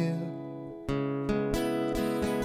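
Acoustic guitar: a chord left ringing fades for just under a second, then strumming starts again with sharp strokes.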